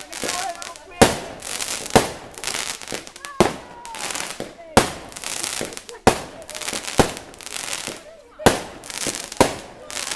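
Aerial fireworks shooting up and bursting in a steady series, about eight sharp bangs a second or so apart, each followed by crackling. Voices of onlookers are heard between the bangs.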